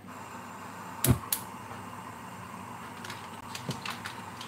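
Gas hob burner being lit under a wok: two sharp clicks about a second in, then the low steady hiss of the burning gas, with a few light ticks near the end.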